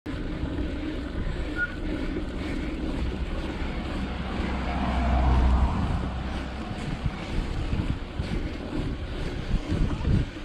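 Wind buffeting the microphone of a bicycle-mounted action camera: a low rumbling roar that swells about halfway through, then breaks into irregular gusts.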